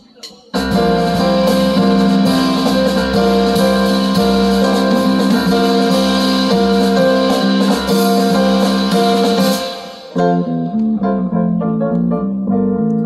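Live jazz trio of stage keyboard, electric bass and drum kit playing together. The band comes in all at once about half a second in, holds a full, dense passage, dips briefly near ten seconds, then resumes with shorter, stepping keyboard and bass notes.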